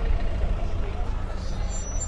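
Low, uneven rumble of a car engine running close by as the car moves slowly, with faint voices of a crowd behind it.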